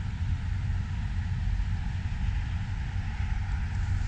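Steady low rumble with a fainter hiss above it.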